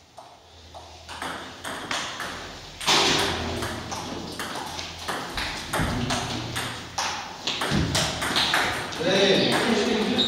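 Table tennis balls clicking off bats and tables in a quick, irregular run of sharp ticks during a rally, louder from about three seconds in, with people talking in the hall.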